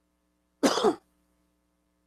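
A man gives one short double cough, clearing his throat.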